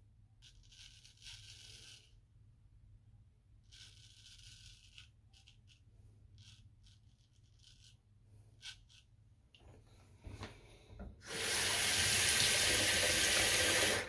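Straight razor scraping through lathered stubble in several faint, separate strokes. About three seconds before the end, a tap starts running into a sink, loud and steady.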